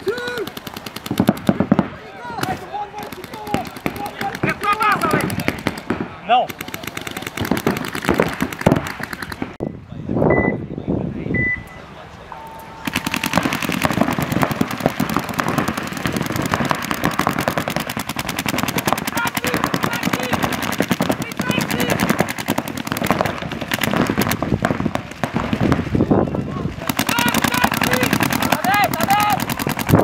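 Paintball markers firing in rapid strings, many shots a second, amid players shouting. The shooting is scattered at first, then becomes near-continuous from a little under halfway in.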